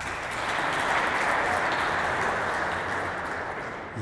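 Audience applauding in a large hall, a steady wash of clapping that eases slightly toward the end.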